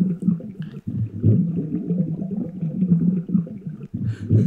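Muffled, low underwater rumbling and gurgling from an animated video's soundtrack, with almost nothing above the low range and a constantly fluctuating level.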